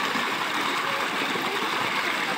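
Water gushing from an irrigation pipe outlet into a concrete tank, a steady rushing splash as the jet churns the pooled water.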